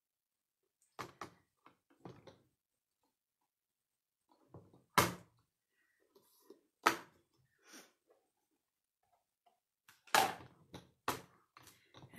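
Small bar magnets clicking and knocking down onto the metal base of a stamp-positioning platform as the paper is shifted, with handling of the clear plastic plate. A series of separate sharp clicks and thunks, about seven in all, the loudest near the middle.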